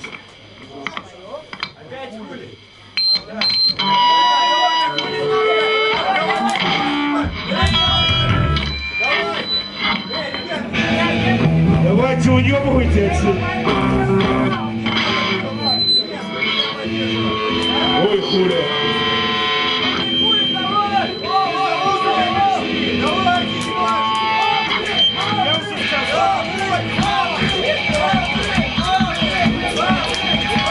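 Live rock band with electric guitars, bass and drums playing loud in a small club. It starts quiet with scattered guitar notes and comes in at full volume about four seconds in, with voices singing over it in the second half.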